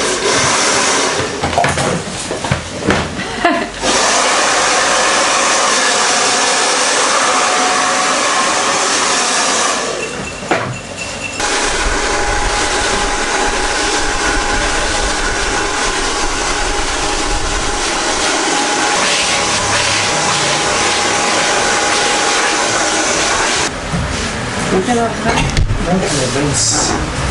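Handheld hair dryer blowing hair dry against a brush: it starts about four seconds in, runs steadily with a short dip about ten seconds in, and stops shortly before the end.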